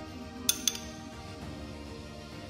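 A metal spoon clinks twice in quick succession against a ceramic plate as food is set down on it, over steady background music.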